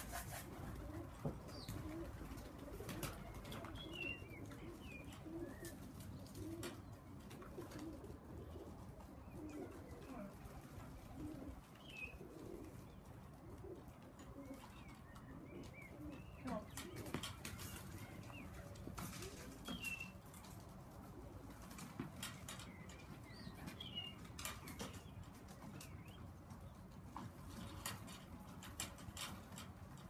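Tippler pigeons cooing over and over, with occasional wing flaps and small clicks.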